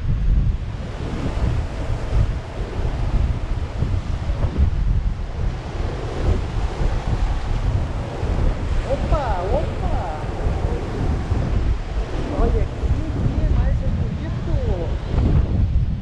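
Wind buffeting the microphone over heavy surf breaking against the pier's pilings in a rough, storm-swelled sea: a steady, gusting rumble throughout.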